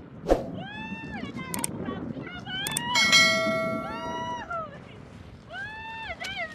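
People shouting long calls one after another, each rising and then falling in pitch, with a longer held cry about three seconds in. A sharp knock comes just after the start.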